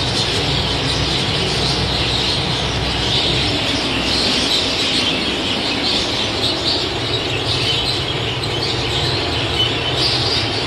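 Many budgerigars chattering and warbling together in an aviary, a dense, continuous twittering, over a low steady hum.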